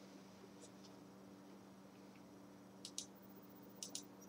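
Near silence with a steady low hum, broken by small sharp clicks: one faint click early, then a pair about three seconds in and another pair near the end, from the camera being handled and repositioned.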